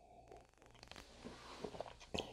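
Faint sipping and swallowing of beer from a glass, with a few small clicks that grow slightly louder in the second half.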